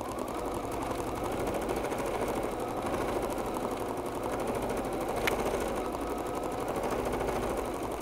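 Bernina B 790 PRO embroidery machine stitching steadily at speed, sewing the placement line of a design through a hooped towel and stabilizer. A single sharp click comes about five seconds in.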